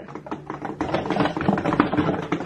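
Rapid rattling clicks and knocks, as of a small wheeled trolley stacked with cardboard boxes and wooden rails being rolled across a hard floor.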